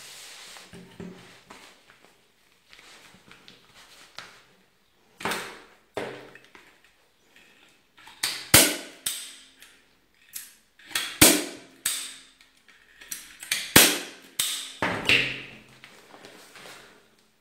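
Manual hand staple gun firing staples through upholstery fabric into a wooden chair seat board: several sharp clacks in the second half, the three loudest about two and a half seconds apart. Softer fabric-handling noise comes before them.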